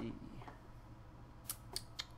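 A few quick computer mouse clicks, three sharp clicks in close succession about a second and a half in.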